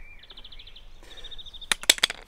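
A small bird trills in two quick runs of rapid, evenly spaced high notes. Shortly before the end come a few sharp clicks, the loudest sounds, as the pressure washer's spray gun parts are handled.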